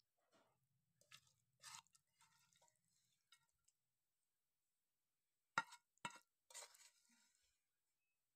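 Faint scrapes and clinks of a metal spoon against a pan and a ceramic plate as fried meat is served out, with two sharper clinks about five and a half and six seconds in, followed by a short scrape.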